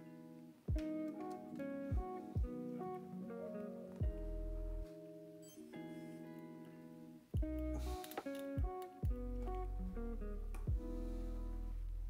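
Background music: a guitar playing a slow run of plucked notes.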